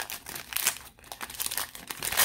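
Waxed-paper wrapper of a 1981 Donruss baseball card pack crinkling as it is torn and peeled open by hand, in irregular crackles.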